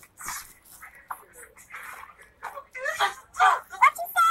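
A voice making wordless yelps and squealing cries that bend up and down in pitch, loudest in the last second or so, after some short scuffling noises early on.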